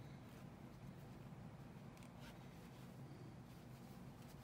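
Near silence: steady low room hum, with a few faint rustles of needle and thread being drawn through a felt plush toy during hand sewing.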